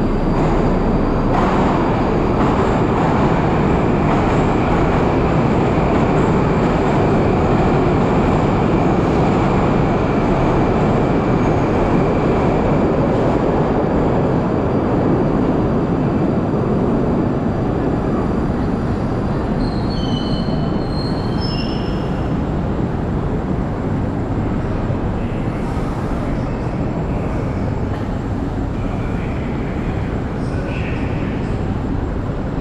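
Moscow Metro train running at a station platform: a loud, steady rumble of wheels and motors that eases a little in the last third, with a faint high whine over the first half and a few brief high-pitched squeals about two-thirds of the way through.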